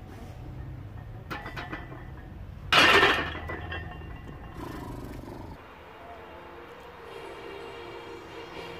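A loaded steel barbell (140 kg) is set back onto the hooks of a steel squat rack. A few light clinks come first, then one loud metal clang with plates rattling about three seconds in, fading within half a second.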